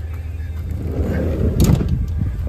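Minivan front door being opened, its latch clicking sharply about one and a half seconds in, over a steady low rumble.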